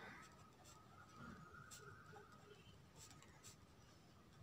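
Faint scratching of a ballpoint pen writing on ruled notebook paper, in short irregular strokes.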